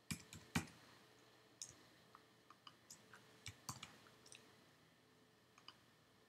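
Faint, irregular clicks of a computer mouse and keyboard as a table is formatted and typed into, about a dozen in all, the loudest about half a second in.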